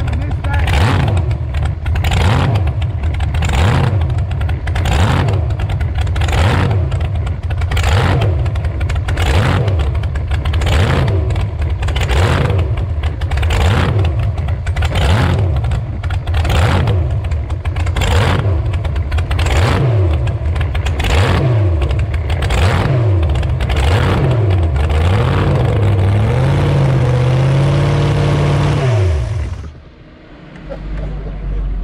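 Hot rod's big-block Ford V8 revved in short throttle blips about once a second as the car is eased across grass, a few slower revs, a brief steadier run, then the engine shut off abruptly near the end.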